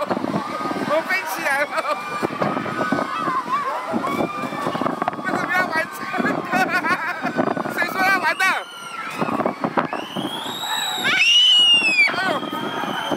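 Riders' voices on a spinning amusement-park ride: excited shouts and chatter, with a high squeal that rises and falls near the end.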